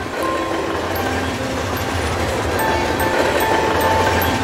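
Train sound effect: a train running along the track, a steady rumble under a noisy hiss, growing slightly louder.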